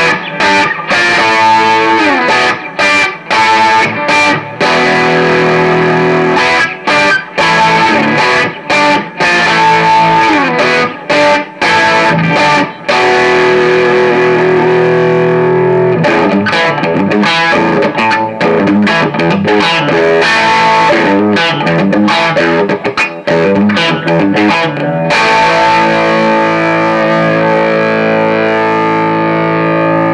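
Fender electric guitar played through a Gemtone ON-X8, an 8-watt EL84 tube amp, with the gain turned up for crunchy overdrive: riffed chords with many short stops, a few held chords, and near the end a chord left ringing.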